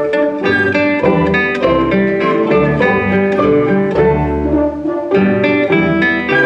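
Classical guitar concerto playing live: a nylon-string classical guitar plucks a run of notes over the orchestra's sustained bowed strings and low bass notes.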